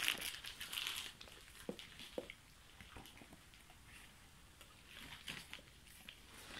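A large dog licking and nosing a frozen raw chicken carcass over a crinkly sheet: a rustling crinkle in the first second, then quiet wet licking broken by a few sharp clicks.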